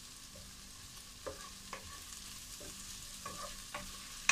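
Sliced shallots, garlic, green chillies and curry leaves frying in oil in a pot with a soft, steady sizzle, while a wooden spatula stirs them, scraping and knocking against the pot several times.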